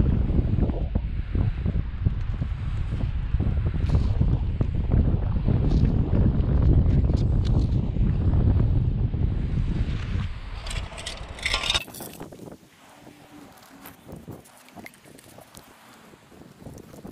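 Wind buffeting the microphone: a heavy, even low rumble that drops away suddenly about twelve seconds in. It leaves only faint scattered clicks and rustles.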